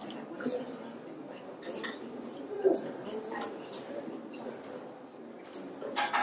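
Indistinct murmur of several people talking quietly in a meeting hall, with scattered small knocks and rustles and one brief louder sound a little under three seconds in.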